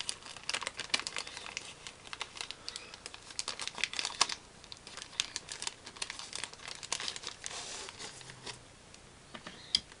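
Clear plastic bag crinkling in irregular crackles as hands handle it and pull out the cardboard token sheets and cards packed inside; the crinkling dies down near the end.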